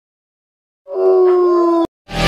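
A single canine howl about a second in, holding a steady, slightly falling pitch for about a second before it is cut off sharply.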